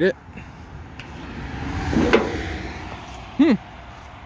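A car passing on a nearby road, growing louder to a peak about two seconds in, then fading away.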